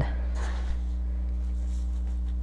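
A steady low hum, with a short, soft hiss about half a second in as silica gel crystals trickle from a small cup into a cardboard box of flowers, then a small tick.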